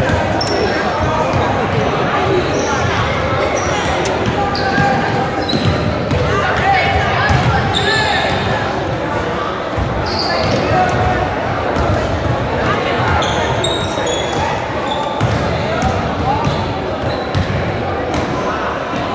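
Basketballs bouncing over and over on a hardwood gym floor, with short high squeaks scattered throughout, echoing in a large gym.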